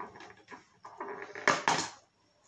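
Handling noise from a cardboard advent calendar being worked at: a few short rustling, scraping bursts, the loudest just past halfway.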